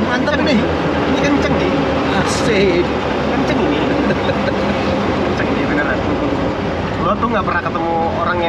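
Classic Fiat 500 driving, its engine and road noise a steady rumble heard from inside the small cabin with the canvas roof open, under men's voices.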